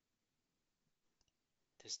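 Near silence: room tone, with a faint short click about a second in, then a man's voice starting a word near the end.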